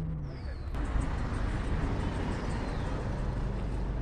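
A motor vehicle passing close by on the street: road and engine noise that swells suddenly about a second in and then holds steady, with a faint falling whistle.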